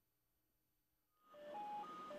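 Near silence for the first second or so, then quiet background music fades in with a few short, steady notes at different pitches.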